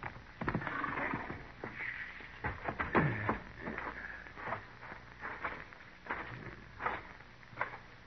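Radio-drama sound effect of horses walking: irregular hoof clops at a slow walk.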